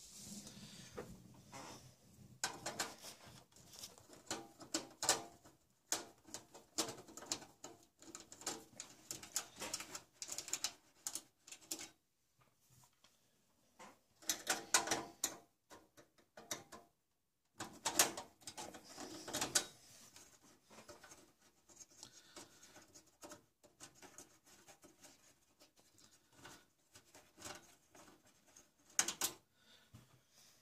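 Screwdriver backing screws out of a computer tower's sheet-metal drive cage: an irregular run of small clicks, scrapes and rattles, pausing briefly about twelve seconds in and again near seventeen seconds.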